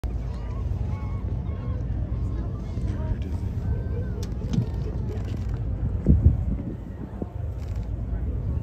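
Steady low rumble of a boat under way at sea, with a louder low buffet about six seconds in.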